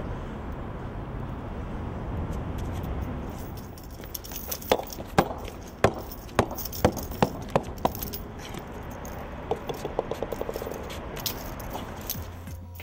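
A bowling ball on concrete: a low rolling rumble at first. From about halfway in, a run of sharp knocks comes closer and closer together as the ball drops and hits the ground again and again. Near the end there is a quick rattle of small clicks.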